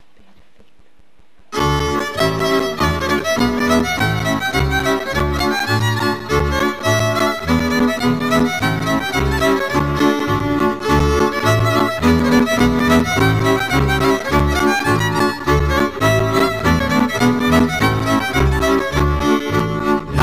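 Instrumental introduction of a Romanian folk song: a fiddle plays the lead melody over a steady bass-and-chord accompaniment with an even beat. It starts about a second and a half in, after a brief low hum.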